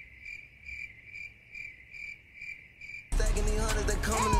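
Cricket chirping sound effect, the stock gag for an awkward dead silence: a steady high chirp about twice a second. About three seconds in it is cut off abruptly by loud music.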